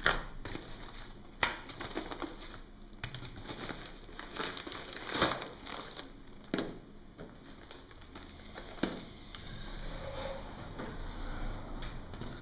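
Plastic mailing bag and plastic blister packaging crinkling as items are taken out by hand, with several sharp knocks of objects set down on a glass tabletop.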